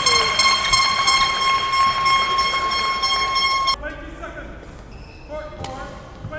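A loud, steady, high-pitched horn-like tone held on one note, cutting off suddenly about four seconds in. After it come short squeaks and a sharp knock in a large hall.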